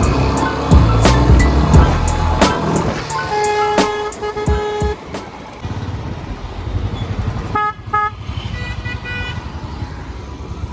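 Busy road traffic with vehicle horns honking: a longer toot around the middle and a few short ones near the end, over the low rumble of a Royal Enfield Bullet 350's single-cylinder engine on its stock silencer while riding.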